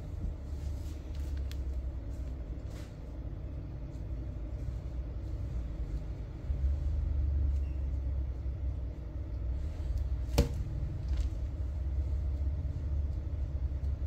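Steady low rumble, swelling briefly in the middle, with a few faint clicks and one sharp click about ten seconds in.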